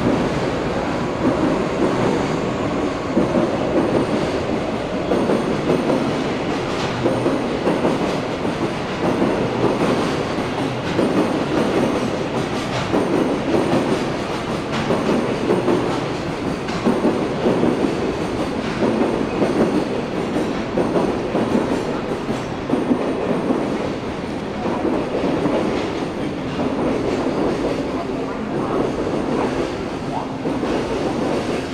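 JR West 117 series electric train moving slowly along a station platform: a steady rumble with repeated wheel clatter.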